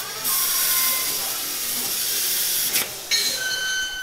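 Plasma cutting torch on a CNC plasma tube notching machine cutting through metal tube: a loud, steady hiss. A steady high tone joins it about three seconds in.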